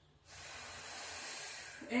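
A woman's long, deep breath in, heard as a steady airy hiss lasting about a second and a half, taken between Pilates leg-raise repetitions.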